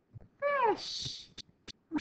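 A domestic cat gives one short meow that falls in pitch, followed by a brief hiss and two light clicks.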